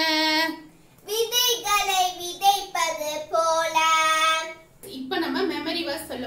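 A young girl singing a song, holding long notes, with a short pause about a second in.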